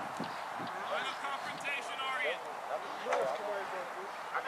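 Indistinct voices of players and sideline spectators calling across an outdoor soccer field, with a few short thuds of the soccer ball being kicked.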